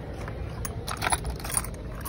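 Metal keychain ring and dog-collar charm clinking in their gift box as it is handled, a run of light, sharp clinks starting about half a second in.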